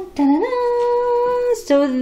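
A woman's voice singing a long, steady held note that it rises into at the start, followed near the end by a shorter wavering sung phrase.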